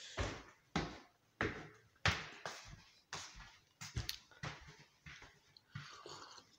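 A series of irregular thumps and knocks, roughly one to two a second, each fading quickly.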